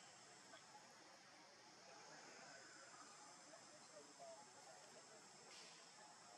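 Near silence: faint outdoor ambience with a steady high-pitched insect drone.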